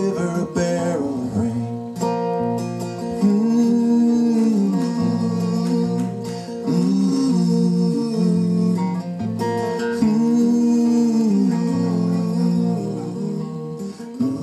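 Two acoustic guitars played live through microphones in an instrumental passage of a folk ballad, strummed chords under a melody line that rises and falls in long phrases.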